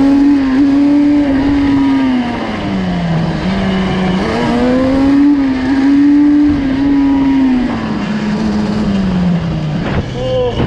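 Yamaha Banshee's 350 twin two-stroke engine on stock pipes pulling in second gear for a wheelie attempt. It revs up and holds, eases off, then revs up and holds again before easing off near the end.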